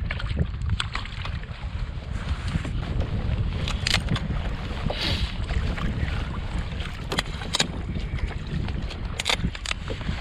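Wind rumbling on the microphone, with several short sharp cracks as a blue crab is cut up for bait.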